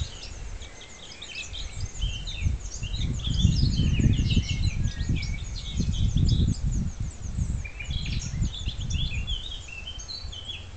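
Nightingale singing: quick runs of short, varied high notes and trills, thinning out for a few seconds in the middle and picking up again near the end. A low rumbling noise on the microphone, loudest through the middle, runs under the song.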